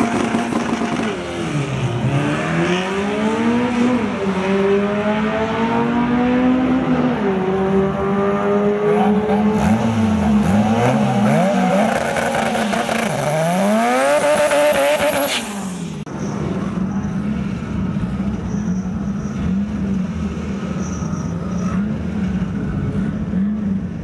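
Turbocharged Honda B18 four-cylinder drag car engine revving up and down again and again for about fifteen seconds, with a high whine climbing near the end of the revving before it cuts off; the engine then holds a steadier, quieter note.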